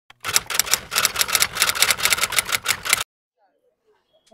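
Typewriter-style typing sound effect: a rapid run of sharp clicks, about ten a second, lasting under three seconds and cutting off abruptly.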